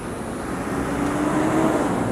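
A steady engine drone with a low hum, growing gradually louder.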